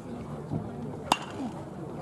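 Baseball bat striking a pitched ball: one sharp metallic ping about a second in, with a brief ring after it.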